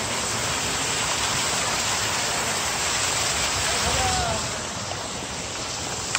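Wind blowing over a phone microphone: a steady hiss with uneven low rumbling buffets.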